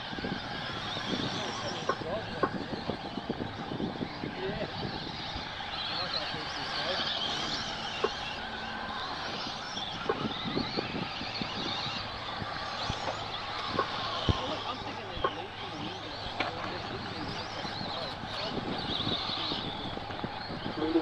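Electric RC off-road trucks racing on dirt. Their motors whine, rising and falling as they accelerate and brake, over tyre noise, with occasional sharp knocks from landings and hits.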